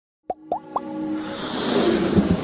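Intro sound effects for an animated logo: three quick pops, each gliding upward in pitch, then a rising swell with sustained electronic music tones building underneath.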